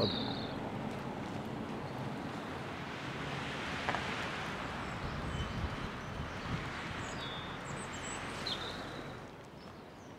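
Outdoor street ambience: a steady rushing noise that fades about nine seconds in, with a few faint, short bird chirps.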